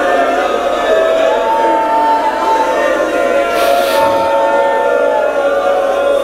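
Many voices of a congregation praying aloud together, blended with steady, sustained musical tones.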